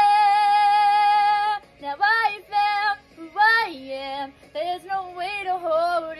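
A young woman singing solo: she holds one long steady note for about a second and a half, then sings a string of short phrases that slide up and down in pitch, with brief gaps between them.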